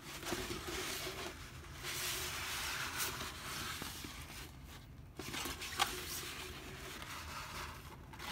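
Paper posters being handled, the sheets sliding and rustling against each other, with a couple of light clicks.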